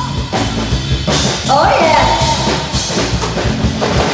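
Live band playing a fast twist beat, the drum kit prominent with regular hits over bass and a melodic line.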